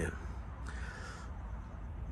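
A bird gives one short call a little over half a second in, lasting about half a second, over a low steady rumble.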